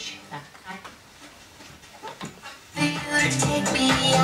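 Sanyo music centre's loudspeakers going from low, broken sound to electronic dance music with a steady beat, which comes in loudly nearly three seconds in, fed to the set through its auxiliary input.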